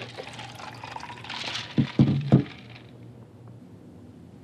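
Liquid being poured for about two seconds, its hiss rising, with three loud knocks close to a microphone near the end of the pour.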